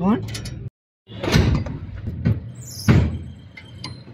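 Voices with irregular knocks and scrapes of metal parts and hand tools as mechanics work on an opened-up car engine; the sound cuts out completely for a moment about a second in.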